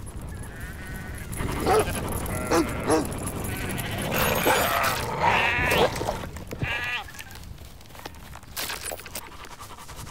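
Sheep bleating, a run of wavering calls between about two and seven seconds in, over a steady low rumble: sheep in distress as a dog savages them.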